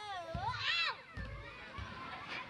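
Children's high voices squealing and calling out as they play, with gliding, up-and-down pitch in the first second. A few dull low thumps follow in the second half.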